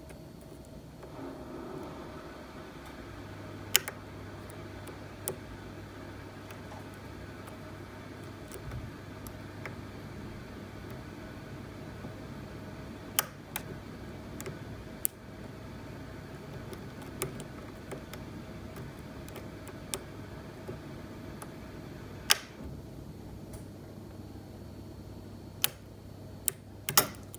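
A pick and tension wrench working the pins of a Tesa T60 dimple lock cylinder, with a sharp metallic click every few seconds over a low steady hum.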